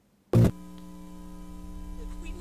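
A single loud spoken word, then a steady electronic hum made of several fixed tones from the soundtrack of a found-footage horror film trailer.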